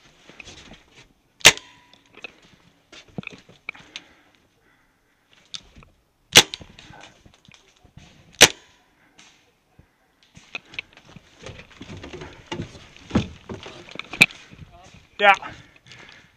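Paintball markers firing: four loud, sharp single cracks spread through several seconds, with fainter pops between them.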